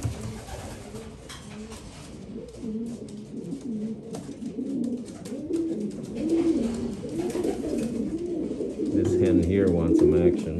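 Racing homer pigeons cooing: a run of low coos that rise and fall, growing louder near the end.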